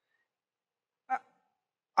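Near silence, broken once about a second in by a brief, clipped vocal sound.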